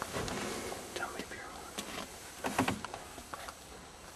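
Hushed whispering between hunters, broken by sharp clicks and knocks from the camera being handled.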